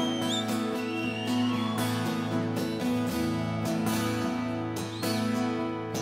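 Live band music led by two acoustic guitars strumming steadily, with no singing. A few brief high gliding tones sound over it near the start and again near the end.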